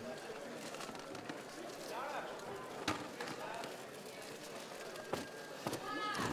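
Faint cage-fight hall ambience: distant shouted voices of coaches or spectators, with two sharp knocks from the fighters, about three and five seconds in.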